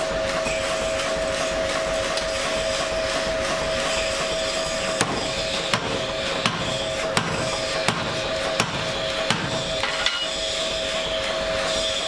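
Hammer blows on a forging tool held against a red-hot steel bar. The sharp metallic strikes are sparse at first, then regular at about one every 0.7 s through the second half, over a steady two-toned hum.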